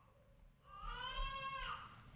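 A young child's single high-pitched cry, drawn out for about a second and rising slightly before it breaks off.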